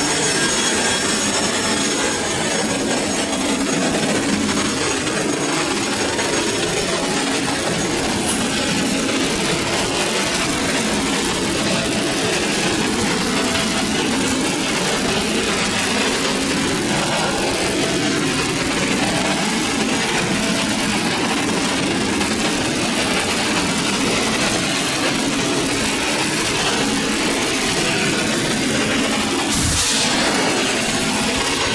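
Machinery in an ASD tug's engine room running with a steady, unbroken din.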